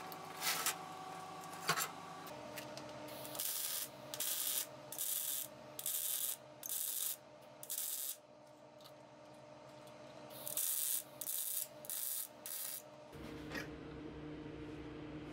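Electric arc welding in short crackling, hissing bursts, each under a second, laid as separate tack welds. There are about five in a row, a pause of a couple of seconds, then four more. Before them come two light clicks of metal parts being handled.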